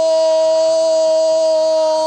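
A male football commentator's drawn-out goal cry: one long, loud shout held on a single steady pitch as a goal is scored.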